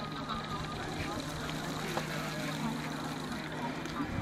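Crowd of people talking at once, an indistinct babble of many voices, with a steady low hum underneath that stops near the end.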